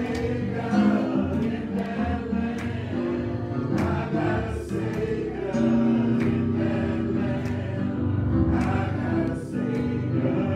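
A gospel song sung by a group of voices, accompanied by sustained keyboard chords and drums with cymbal hits.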